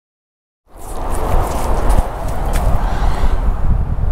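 Silence for the first moment, then steady outdoor background noise fades in, with a heavy low rumble and a few faint clicks.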